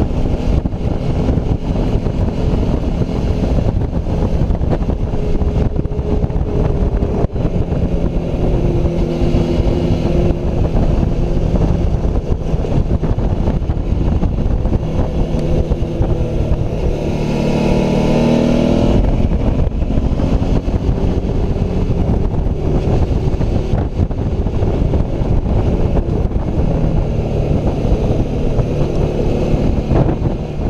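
Suzuki V-Strom motorcycle engine running on the move, heard from a helmet-mounted camera with wind rushing over the microphone; the engine note steps between steady pitches. A little past halfway the revs rise sharply for about two seconds under acceleration.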